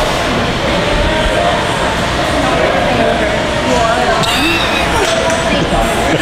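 Indistinct voices over the steady din of a gym, with dull thumps of weight plates being handled on a barbell.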